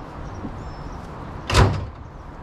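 A single loud clang of sheet metal about one and a half seconds in, ringing briefly: a cut-out car door panel being dropped or tossed down.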